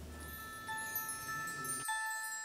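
Bell-like chime tones of a short musical jingle: several clear high notes come in one after another and keep ringing together.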